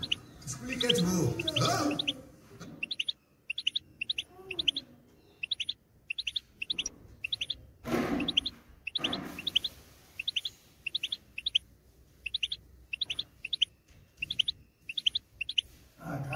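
European goldfinch singing: short, high, rising notes repeated in quick runs of a few per second. A person's voice is heard briefly at the start and again about eight seconds in.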